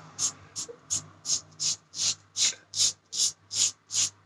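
Safety razor with a Treet blade scraping through about four days of stubble on a lathered chin. It goes in short, quick, even strokes, about three a second, on the first pass.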